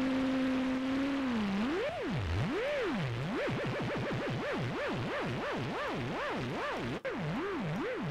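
A ZynAddSubFX software-synth note, a saw wave phase-modulated by noise, holds a steady pitch, then an LFO on its frequency starts swinging the pitch up and down. The swoops come slow and wide at first, then several times a second as the LFO rate is raised. This is an early stage of synthesizing a vinyl record-scratch sound.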